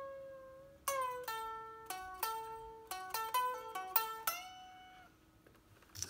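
Unamplified solid-body electric guitar playing a lead phrase of single notes: a held bent note, a note bent and let down about a second in, a quick run of short notes, then a last note that bends and dies away about five seconds in.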